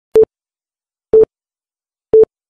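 Countdown leader beeps: two short single-tone electronic beeps, one second apart, each marking a number of a 3-2-1 countdown.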